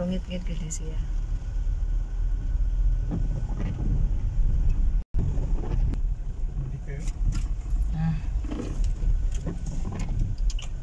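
Steady low rumble of a moving car heard from inside the cabin, engine and tyres on a wet road. The sound breaks off for an instant about halfway through.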